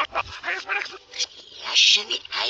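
Cartoon soundtrack played backwards: short, choppy, garbled voice-like sounds with sliding pitch, loudest in a bright burst just before the end.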